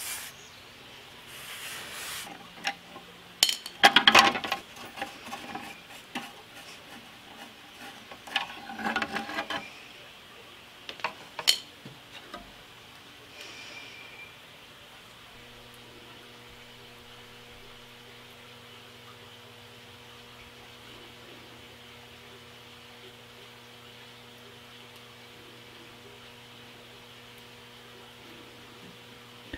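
A cloth shop rag rubbing and wiping over the steel table of a horizontal milling machine, with a few sharp metallic clicks and knocks in the first part. After that there is only a faint, steady low hum.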